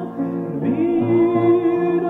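A singing voice, ad-libbing a melody on an open vowel, bends into a long held note about half a second in, over sustained piano chords. The sound is dull and lacks treble, as on an old home cassette tape.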